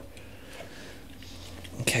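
Faint scraping and light clicks of a rubber side pad being pressed and shifted by hand against the plastic shell of a King Song S20 electric unicycle, over a low steady hum. A man's voice comes in near the end.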